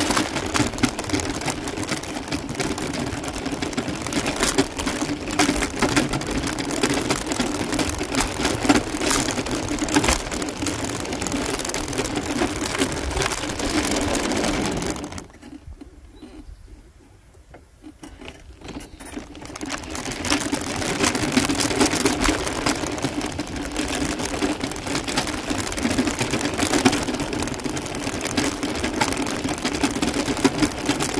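A small motor vehicle rolling over a dirt and gravel road: a steady motor hum with rough tyre-on-gravel noise. About halfway through the sound falls away sharply for a few seconds, then builds back up gradually.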